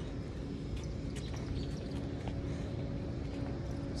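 Steady outdoor street background noise with a faint, even hum and a few light clicks.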